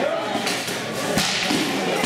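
Several sharp cracks and thuds of sword-fighting weapons striking, the loudest a little past a second in, over the din of a large hall.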